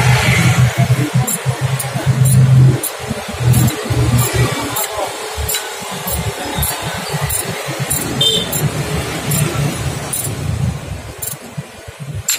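Irregular light metallic clicks and clinks of a hand socket tool working on the water-pump hose fitting, over a low background hum that is loudest in the first few seconds.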